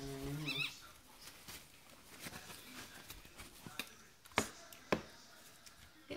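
Soft rustling of a towel rubbed over a newborn Yorkshire terrier puppy to stimulate it, with a brief high squeak from the puppy about half a second in. Two sharp clicks come near the end.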